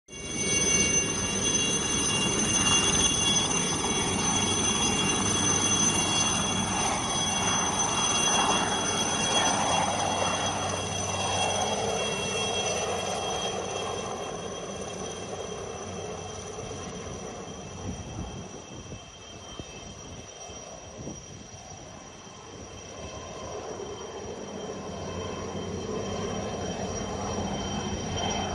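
Light turbine helicopter lifting off and flying away: a steady high turbine whine over rotor noise, loudest in the first dozen seconds, then fading and growing a little louder again near the end.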